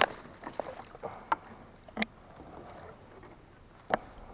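Leafy branches rustling as they are grabbed and pushed aside by gloved hands from a kayak, with four sharp knocks: one at the start, two in the middle and one near the end.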